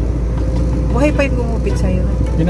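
Steady low rumble of a car's road and engine noise heard inside the cabin, with a short bit of a woman's voice about a second in.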